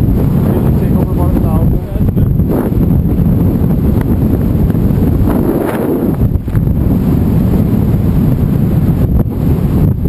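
Wind buffeting the microphone during a parachute descent under an open canopy: a loud, steady low rumble with gusty dips.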